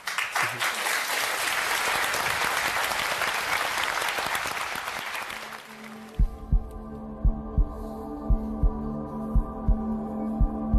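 Studio audience applauding, which stops about six seconds in and gives way to a music cue: held chord tones over a slow double thump like a heartbeat, about once a second.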